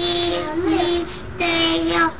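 A child singing two long held notes on one steady pitch, the first just over a second long with a small wobble in the middle, the second shorter.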